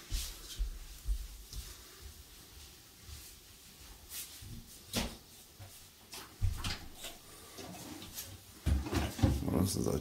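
Footsteps on a hard floor with scattered light knocks and sharp clicks as a kitchen window is unlatched and swung open; a voice starts near the end.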